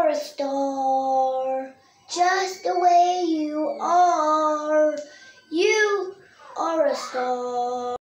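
A five-year-old girl singing solo, without accompaniment, in several phrases with long held notes and short pauses for breath between them.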